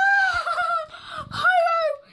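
A child shrieking with excitement: two long, high-pitched "Ah!" cries, the second coming just after a second in.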